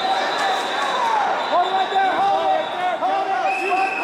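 Wrestling shoes squeaking on the vinyl mat as the wrestlers scramble: a quick string of short squeaks from about a second and a half in, over the general noise of a gym.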